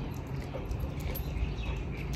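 A dog moving about on concrete close by, its claws making faint, irregular clicks, over a low wind rumble on the microphone.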